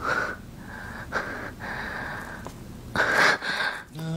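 A person's heavy breathing in gasps: one at the start, another about a second in, and a longer, louder breath near the end.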